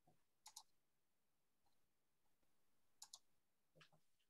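Two faint double clicks of a computer mouse button, about two and a half seconds apart, over near silence.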